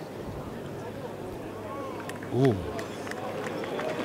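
Open-air ambience of a hushed golf gallery around the green while a long putt rolls, with a few faint clicks and a single drawn-out "ooh" about two and a half seconds in as the putt misses.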